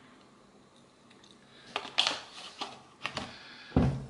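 A few light, irregular clicks and knocks of a juice carton and blender parts being handled and set down on a kitchen worktop. They come in the second half, the sharpest about halfway through.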